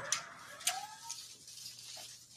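An office door being opened: two sharp clicks of the latch and handle, with a short rising creak from the hinge.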